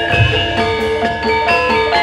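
Javanese gamelan playing: struck bronze metallophones ringing in a quick, even rhythm over low drum strokes.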